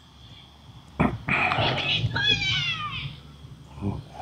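Children yelling: a loud, high-pitched shout starting about a second in and lasting about two seconds, its pitch sliding downward near the end.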